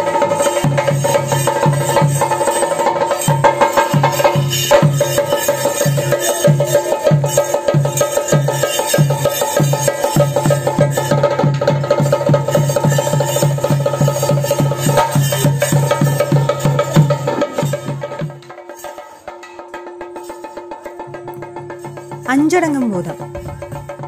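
Chenda drums beaten in a fast, dense, even rhythm for Theyyam, with a steady ringing tone above the strokes. The drumming drops away suddenly about three-quarters of the way through, leaving a quieter steady tone.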